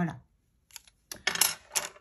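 Wooden Prismacolor coloured pencils clicking against each other and the cutting mat as they are put down: a few light clicks, then a quick run of sharp clicks in the second half.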